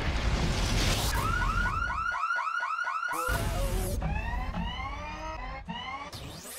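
Electronic sound effects under an animated graphic. A sudden loud start with a low rumble gives way, about a second in, to a fast repeating alarm-like chirp, about four a second for two seconds. After a brief drop, a series of rising electronic swoops follows.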